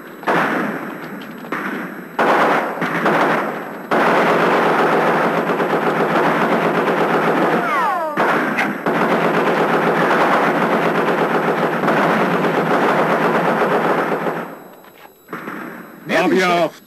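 Machine-gun fire: a few separate bursts at first, then about ten seconds of continuous rapid automatic fire. A short falling whine comes about eight seconds in, and the fire dies away just before the end.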